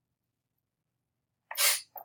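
Near silence, then about a second and a half in, one short, sharp burst of breath noise from a person, with a brief lower sound after it.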